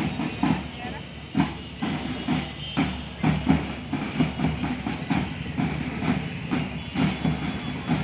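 Drum beats at a steady marching pace, about two a second, accompanying a column of marchers on a street.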